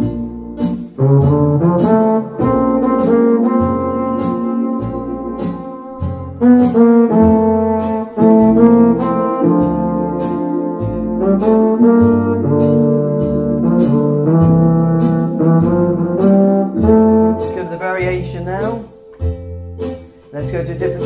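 Orla GT8000 Compact home organ playing a tune over its easy-jazz auto-accompaniment: a steady drum pattern, a bass line and held chords, with a quick rising run of notes near the end.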